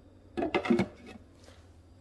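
Glass lid set down onto the crock of a Crock-Pot slow cooker: a short clatter and clink about half a second in.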